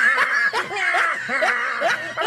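A person laughing in a quick run of short voiced bursts, about three a second.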